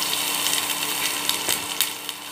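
Minced ginger sizzling in hot oil in a nonstick pan, with a few sharp crackles near the end.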